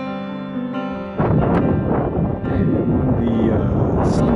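Soft piano music, then about a second in, a loud rush of wind buffeting the microphone takes over, with the music still faintly under it.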